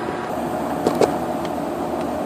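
Vending machine refrigeration deck running steadily: the compressor and condenser fan make an even mechanical hum, with two brief knocks about a second in. The unit is running normally after an evaporator change, with good pressures.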